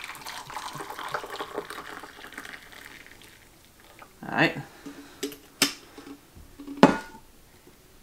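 Hot water poured from a stovetop kettle into a coffee mug, a steady splashing stream for the first three seconds or so. Later come two sharp knocks as the kettle is handled and set down.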